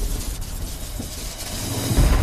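Sound effect of crackling electricity over a low rumble as lightning plays around a figure, dying down and then building again near the end.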